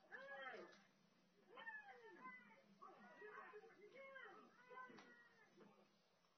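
Faint, overlapping raised voices of several people, shouting in rising-and-falling calls about half a second long, played back from a fight video on a device in the room; they fade near the end.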